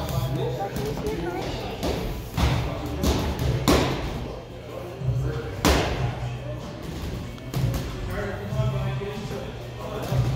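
Boxing gloves striking hanging heavy bags: a few sharp thuds, the loudest a little past the middle, over background music with a steady bass beat and children's voices.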